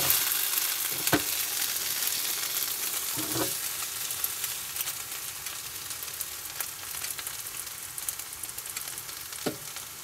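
Garlic fried rice with mushrooms sizzling in a frying pan on a gas hob, a steady hiss that eases slightly. A few short knocks of the wooden spatula against the pan come about a second in, after three seconds, and near the end.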